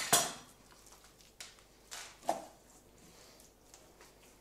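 Kitchen handling sounds: a knife and raw chicken being worked on a wooden cutting board and in a bowl. A loud knock right at the start, then a few lighter knocks and clinks over the next couple of seconds.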